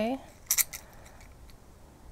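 Lino cutter's deep V gouge cutting through pumpkin rind: a quick cluster of three or four sharp, crisp clicks about half a second in.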